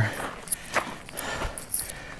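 A few soft footsteps on a dirt trail: short scuffs and knocks about every half second over a faint rustle.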